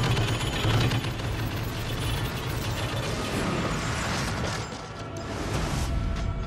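Rapid, continuous handgun fire from a film soundtrack, a dense stream of shots over film score. It thins into a rougher clatter and rumble as the floor breaks away and debris falls.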